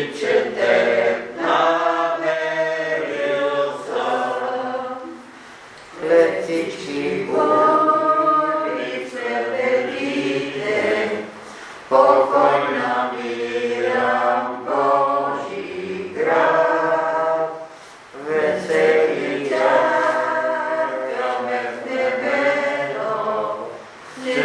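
A group of voices singing a hymn a cappella, in phrases of about six seconds with short breaths between them.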